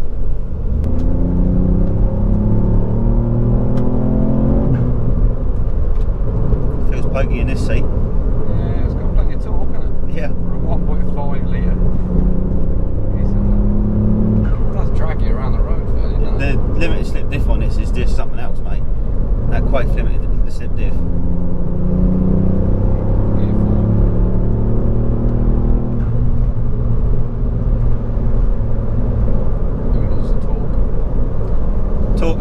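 Ford Fiesta ST's 1.5-litre turbocharged three-cylinder engine heard from inside the cabin, pulling hard under acceleration. Its pitch climbs three times, near the start, in the middle and again later, and drops back between, over a steady road rumble.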